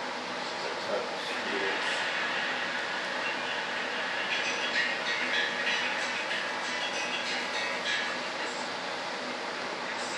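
Steady rushing machine noise, with a few faint clicks of small parts being handled.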